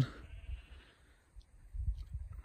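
Quiet open-air background with a faint, distant animal call in the first second, then a soft low rumble near the end.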